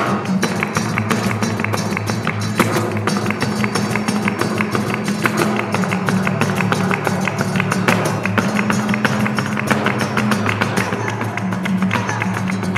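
Live flamenco: guitar playing under fast, sharp taps of a dancer's heeled shoes stamping on a wooden board, with cajón and handclaps keeping the rhythm.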